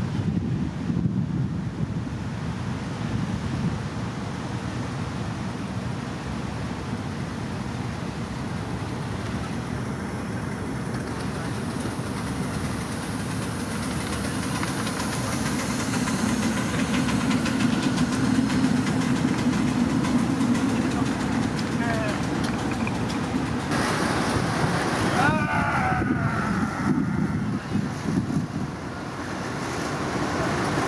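Miniature steam locomotive hauling a passenger train on ground-level track: a steady rumble of wheels on rails that grows louder about halfway through as the train runs close past, then stays up as it moves on.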